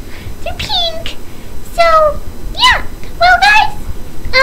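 A string of about six short, high-pitched, meow-like vocal calls, each bending up and down in pitch.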